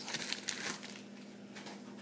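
Faint crinkling and rustling of a plastic mailer being handled, a few soft crackles in the first second, then quieter.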